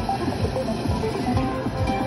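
Jingly music from a casino slot machine during its bonus round, playing while the final offer is revealed.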